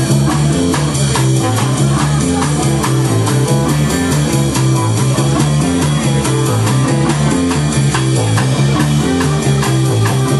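A live noise-rock band playing loud and dense: a bass line stepping through short repeated notes under steady drum hits, with a thick wash of noisy sound on top from saxophones and effects.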